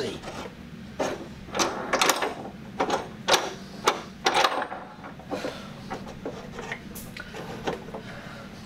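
Metal clanks and knocks from the clamps and lid of a resin-casting pressure pot being worked by hand, a quick run of them in the first half and fewer later, over a steady low hum.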